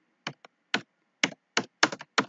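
Computer keyboard being typed on: about six separate keystroke clicks at an uneven pace.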